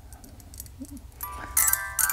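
Hand-cranked music box movement: a few faint clicks, then about a second in the steel comb starts plucking notes off the turning pinned cylinder, several bright ringing tones overlapping as the tune plays.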